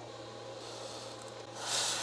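A can of computer duster held upside down sprays a short hiss of freezing propellant onto the battery's temperature sensor, starting about a second and a half in, to trigger its low-temperature charge protection. A steady low hum runs underneath before the spray.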